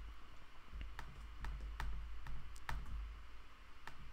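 Computer mouse clicking: several quiet, sharp clicks at uneven intervals over a faint low hum.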